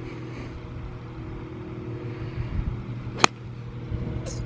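A golf iron striking the ball on a full swing: one sharp, crisp click about three seconds in, over a steady low mechanical hum.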